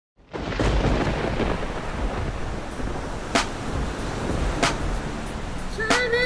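A deep, continuous rumbling noise with two sharp cracks about three and a half and four and a half seconds in. Music with pitched tones comes in just at the end.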